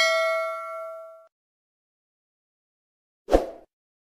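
A bright bell-like ding sound effect, typical of the bell-icon notification in a subscribe-button animation, rings out and fades away within about a second. Near the end comes a short thud.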